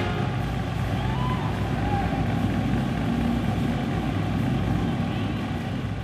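Indistinct murmur of a crowd of voices echoing in a gymnasium, with no music playing.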